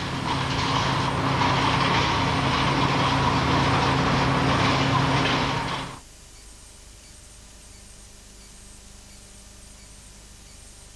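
A car's steady rushing noise with a low hum beneath it for about six seconds, cut off suddenly. Only a faint hum remains after that.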